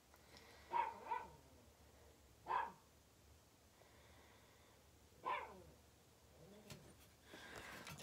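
A dog barking faintly: four short barks, two close together about a second in, then one about two and a half seconds in and one a little after five seconds.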